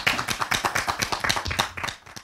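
Audience applauding, many hands clapping, the claps trailing off near the end.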